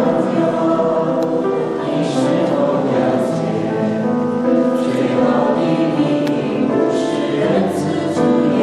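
A small mixed choir of men and women singing in chords, with held notes and crisp 's' sounds every second or so.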